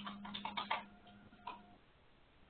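Computer keyboard keys being typed: a quick run of clicks in the first second, then one last keystroke about a second and a half in.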